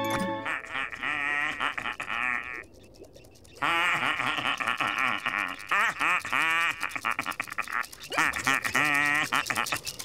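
A cartoon voice (Squidward) singing a wordless, happy tune with a strongly wavering pitch, in phrases with a short pause about three seconds in.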